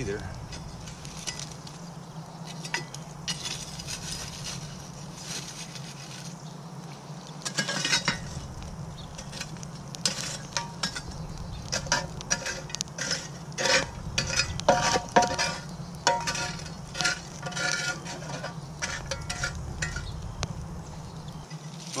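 Steel camp shovel scraping through a campfire's coal bed and tipping hot coals onto a cast-iron Dutch oven lid: repeated scrapes, clinks and rattles, thickest in the second half.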